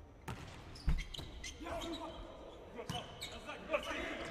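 Volleyball being struck during a rally: sharp slaps of hands on the ball, a jump serve just after the start, a pass about a second in, and further hits near three seconds and just before the end, with players' shouts in between in a reverberant arena.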